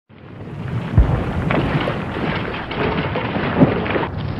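War sound effect: a dense crackling, rumbling din that fades in, with a heavy boom about a second in and another near the end, like distant explosions.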